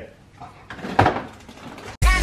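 A refrigerator door being handled, with one sudden knock about a second in as bottles on its door shelves are moved. A short laugh comes just before it.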